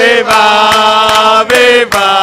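A group of men chanting a football supporters' chant in long held notes, with a new note starting about one and a half seconds in and a few hand claps.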